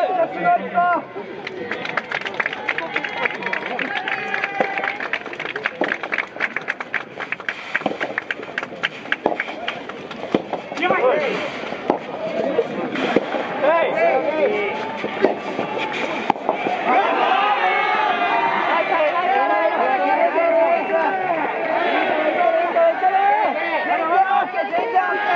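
Soft tennis point: a rapid run of sharp pops and claps for several seconds, a few louder single cracks of the rubber ball off the rackets, then many voices shouting and cheering once the point is won.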